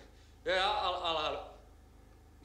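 A man's voice: one drawn-out spoken utterance starting about half a second in and lasting nearly a second, over a faint steady low hum.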